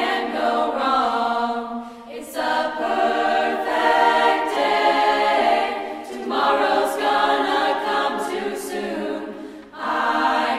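High school choir singing in phrases that swell and fall, with short dips about two seconds in and just before the end.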